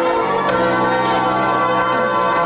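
Recorded dance music playing for dancers, made of sustained chords of bell-like tones that shift about half a second in.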